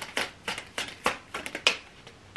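Tarot cards being handled and flicked from the deck: an irregular run of about eight crisp snaps and clicks, the loudest near the end.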